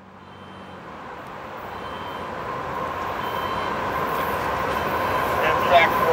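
Approaching train rumbling, growing steadily louder, with a steady high whine running through it.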